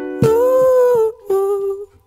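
A man's voice humming two wordless held phrases, the closing notes of a song, over a sustained backing chord that fades under the first phrase. The music stops just before the end.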